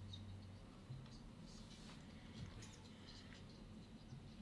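Faint scratching and small ticks of a pen writing on paper, over a low steady hum.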